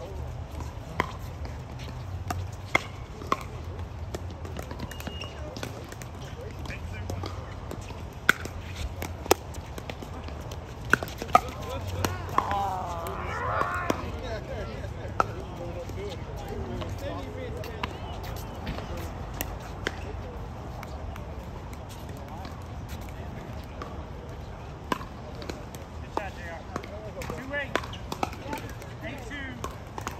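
Pickleball paddles striking a hard plastic ball: sharp pops at uneven intervals, a quick cluster of them about ten seconds in. Players' voices talk in the middle and again near the end.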